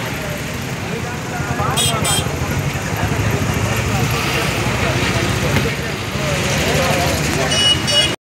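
Many men talking at once over the low rumble of idling vehicle engines. Two short, high horn beeps come about two seconds in, and another high horn sounds near the end.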